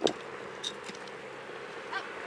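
Steady low hiss and hum of a police body-worn camera's microphone outdoors, with no clear event.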